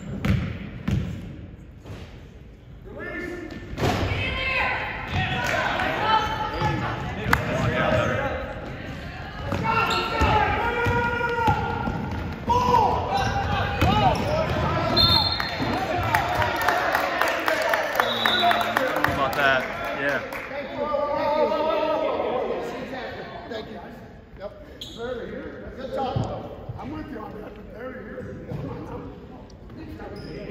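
A basketball bouncing on a hardwood gym floor during play, with indistinct shouting from players and spectators echoing around the large gym.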